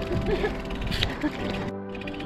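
Background music with steady held tones, at a moderate level, with a brief dropout just before the end.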